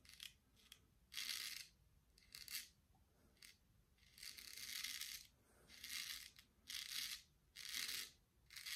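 Economy Supply 800 straight razor shaving a lathered cheek: a series of faint, crisp scraping strokes as the blade cuts through the stubble, about seven strokes, some brief and some lasting close to a second.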